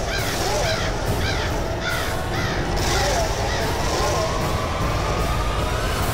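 Crows cawing over and over, about two caws a second, above a steady low rumble, with a faint tone slowly rising in the second half.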